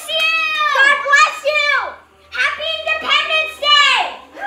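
Excited children's voices, high-pitched shouts and calls in quick succession, with a brief pause about halfway.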